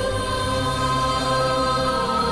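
Soundtrack music: a choir of voices holding long, sustained chords.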